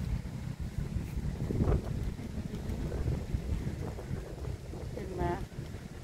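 Wind buffeting the microphone, a steady low rumble, with a short spoken phrase about five seconds in.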